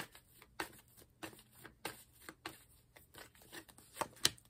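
A deck of tarot cards being shuffled by hand: faint, irregular soft snaps and slides of the cards, a few each second.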